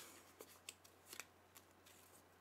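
A few faint crinkles and small sharp ticks of a folded paper slip being handled and opened by hand.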